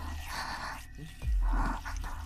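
Wordless human vocal sounds, two short murmuring spells with the second louder, over a steady low hum.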